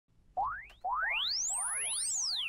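Cartoon title sound effect: a short rising whistle glide, then a long one that sweeps up very high and falls back down, with several more rising glides layered over it.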